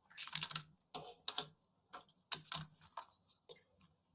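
Faint, irregular keystrokes on a computer keyboard.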